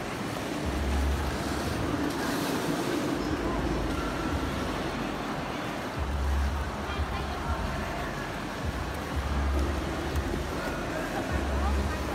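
Indoor ice rink din: a steady wash of noise with indistinct voices of skaters, and a dull low rumble that swells for about a second several times.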